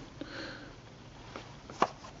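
A small cardboard film box being handled and turned over, giving faint light taps and one sharp click near the end. A short breath through the nose comes about half a second in.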